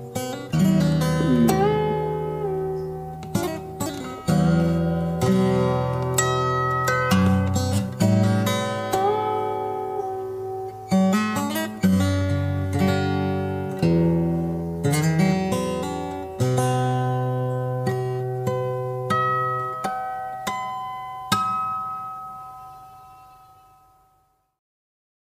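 Steel-string acoustic guitar played fingerstyle: a bass line under a plucked melody, with a few slides between notes. The last notes are left to ring and fade out near the end.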